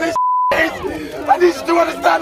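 A short, steady censor beep, about a third of a second long, bleeping out a swear word in a man's shouted speech. The speech itself comes through a handheld megaphone and cuts in again right after the beep.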